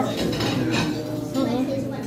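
Metal utensils clinking against ceramic dishes: several short, light clinks.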